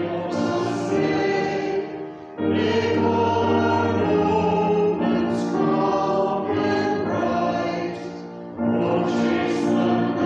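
Church choir singing a hymn in sustained notes, with brief pauses between lines about two seconds in and about eight seconds in.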